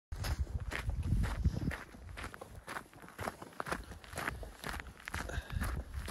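Footsteps of a person hiking up a hill, a steady run of steps about two a second, with a low rumble in the first two seconds.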